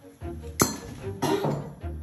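Glass neck of a port bottle cracking off, a single sharp snap about half a second in, over background music. The break comes from thermal shock: the neck was heated with red-hot port tongs and then dabbed with a wet cloth.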